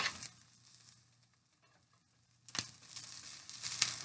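Near silence for about two and a half seconds, then a single click and a faint sizzle of egg white frying on low heat in a nonstick pan, with a few light clicks from handling it near the end.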